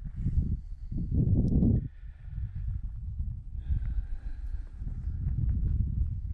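Wind buffeting the camera microphone: an uneven low rumble that swells about a second in and then eases.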